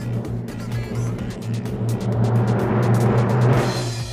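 Background music with a steady low bass note, under a rushing noise that swells and cuts off near the end.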